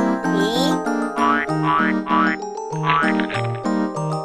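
Bouncy ragtime tune with an alternating low bass note and chord. Cartoon sound effects are laid over it as the egg cracks: a short rising slide about half a second in, and a brief rapid rattle about three seconds in.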